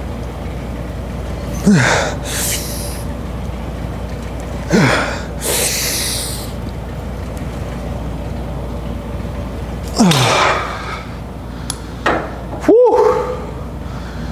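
A man grunting with effort during a set of cable pulls: three short grunts falling in pitch, a few seconds apart, each followed by a heavy breath. A brief voiced exhale comes near the end, over a steady low room hum.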